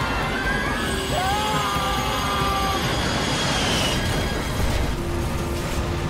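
Dramatized sound of an airliner stalling and crashing: a loud, steady rumble with rising cries over it in the first half, building to an impact and explosion boom about four to five seconds in. A low, steady music drone comes in after the boom.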